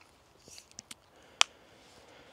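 Faint rustling and a few small clicks as a seated person shifts position, with one sharp click about halfway through.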